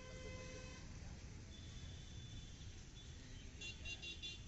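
Open-air city street ambience: a steady low traffic rumble, with a short steady-pitched horn toot in the first second and a run of quick high chirps near the end.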